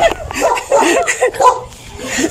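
A dog barking in a quick series of short yaps, fading off near the end.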